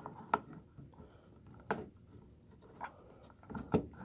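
A handful of separate sharp plastic clicks and knocks as a clear polymer Glock magazine is pushed and worked down into a plastic magazine pouch, with two clicks close together near the end.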